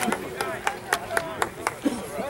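Quick hand claps, about four a second, with faint shouting voices among them.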